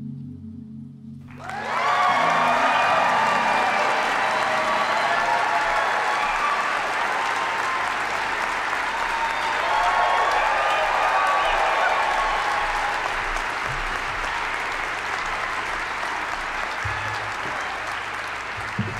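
Auditorium audience applauding: the applause breaks in suddenly about a second in, right after a short low musical tone, and carries on steadily, easing slightly near the end.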